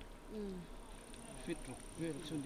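A thin, high, steady insect buzz that starts just after the beginning, with faint talk in the background.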